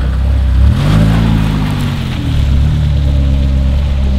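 A BMW SUV's engine pulling away from standstill: its pitch rises about a second in, then settles into a steady low drone as the car drives off.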